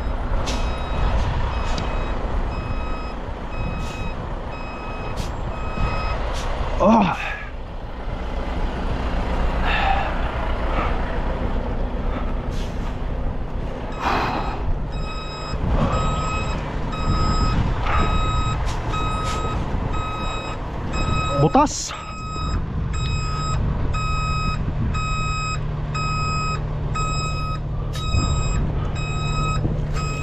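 A heavy truck's backup alarm beeping in an even repeating pattern, pausing for several seconds and starting again about halfway through, over the low running of diesel truck engines.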